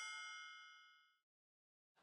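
A bright, bell-like chime ringing out and fading away within about the first second.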